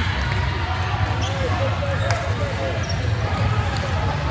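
Sports-hall ambience between volleyball rallies: sneakers squeaking on the court and a few sharp knocks, over a steady low hum and background chatter.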